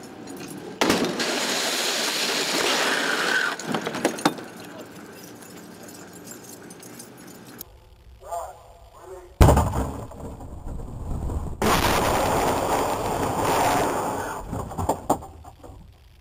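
Helicopter crash-test impact: a sudden loud crash and rush of noise about a second in, then, after a break, a louder hit with a heavy low thud about nine seconds in, followed by several seconds of loud rattling noise.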